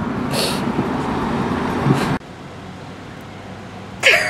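Road and traffic noise inside a moving car with its window down, with a short breath early on. About two seconds in it cuts off abruptly to a quieter, steady car-interior hum.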